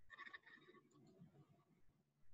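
Near silence: faint room tone, with a brief faint sound in the first half-second.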